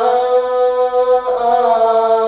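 A male voice singing unaccompanied, holding one long steady note and then moving to a second held note a little over a second in.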